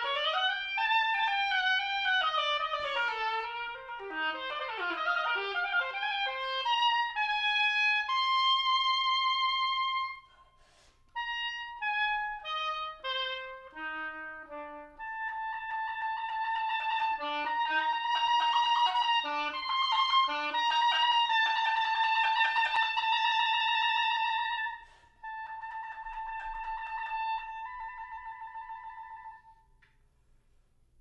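Solo oboe playing an unaccompanied passage. It starts with quick rising and falling runs, then held notes, then a short break about ten seconds in and a falling line. A long, loud stretch keeps returning to one high note, and after a brief gap a quieter closing phrase dies away at the end.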